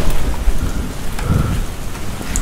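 A steady rain-like hiss over a deep rumble, with a short low voice sound a little past the middle.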